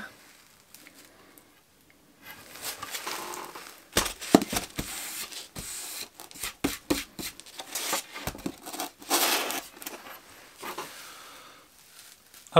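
Pieces of laminated furniture chipboard being handled on a workbench: irregular rustling and scraping with a few knocks as the boards are set down and turned over, starting about four seconds in.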